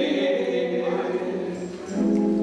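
Gospel singing: a man singing into a microphone with other voices joining, holding long notes, and a short dip before the next phrase comes in near the end.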